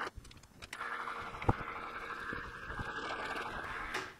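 Precision Matthews PM-1127 metal lathe running under power with a steady motor and gear-train whine during a spring pass while single-point cutting a metric thread. The running sound drops out briefly at the start and picks up again under a second in, with one sharp click about a second and a half in.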